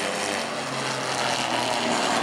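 Stock car engines running at full throttle as two cars race side by side down the straight, a steady engine drone.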